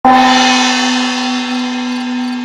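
A single struck meditation bell, hit once at the start and ringing on, its upper overtones slowly fading while a steady low tone holds.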